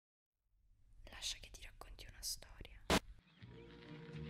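Faint whispered voice in hissy fragments, cut by a sharp click near three seconds, after which a steady low hum sets in.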